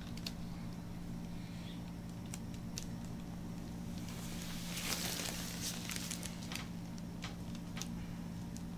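Oiled, plastic-gloved hands kneading bare skin: scattered sticky clicks and squishes, with a longer rubbing squish about five seconds in, over a steady low hum.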